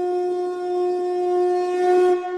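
A wind instrument holding one long, steady note, rich in overtones and slightly breathy, swelling a little near the end.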